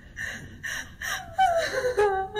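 A person gasping in short breathy bursts, about three in a row, then a wavering whimper that slides down in pitch near the end, running into crying.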